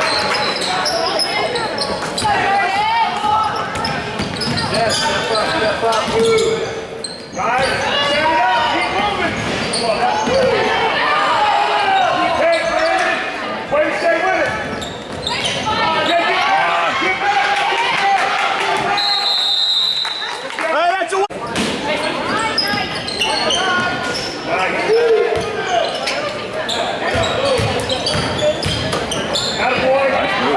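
A basketball being dribbled and bounced on a gymnasium's hardwood court during play, with sneaker noise and the voices of players and spectators in the gym throughout. A referee's whistle sounds once, briefly, about two-thirds of the way through.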